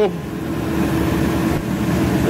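Cincinnati mechanical plate shear running, with a steady motor hum and mechanical whir.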